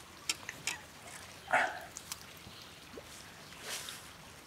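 Small water splashes and a few light clicks and knocks as a hooked bass is scooped into a landing net at the side of a boat, mostly quiet, with the loudest splash about a second and a half in.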